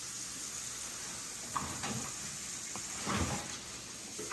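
Quiet room noise with a steady hiss, a small click about a second and a half in and a soft thump a little after three seconds.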